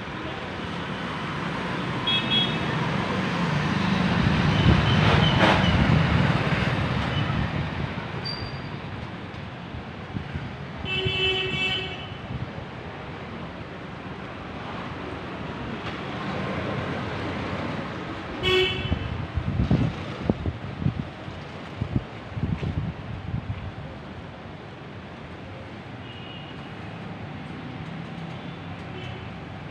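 Busy street traffic with a vehicle passing close by a few seconds in. Vehicle horns honk several times over it, a longer blast about eleven seconds in and a short sharp one about eighteen seconds in.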